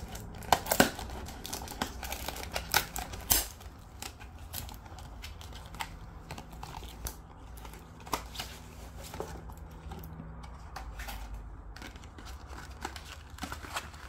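Cardboard packaging being opened and handled: an irregular run of sharp crackles, clicks and scrapes as the box is pried open and the plug is slid out in its cardboard insert. The sounds are busiest and loudest in the first few seconds, then come more sparsely.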